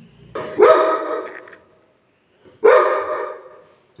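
A Labrador dog barking twice, the barks about two seconds apart, each loud at the start and trailing off.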